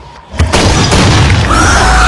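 Channel-intro sound effects: a heavy boom about half a second in, then a loud, dense crashing sound-effect bed with music and gliding tones.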